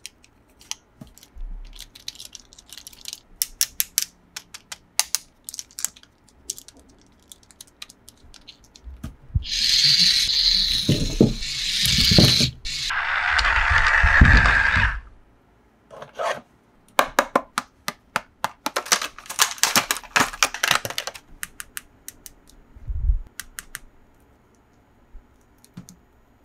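Small plastic toy figures handled at close range, with quick clicks and taps. In the middle, a loud rushing whir for about five seconds as a red plastic toy car runs on carpet, followed by more clicking and a single soft thump near the end.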